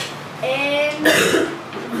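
A person clearing their throat with a short cough about a second in, after a brief vocal sound.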